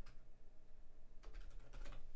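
Typing on a computer keyboard: a faint keystroke near the start, then a quick run of several keystrokes about a second and a quarter in.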